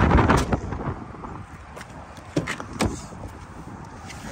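The tailgate of a 2018 MG3 hatchback pushed shut by hand at the start, then two sharp clicks and knocks a couple of seconds later as the driver's door is unlatched and opened.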